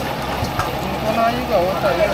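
Busy open-air market ambience: people talking in the background over a steady low rumble, with a single light click about half a second in.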